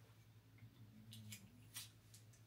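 Near silence with a few faint, short clicks about a second in and near the end, from Scotch tape and a small filter being handled, over a faint low hum.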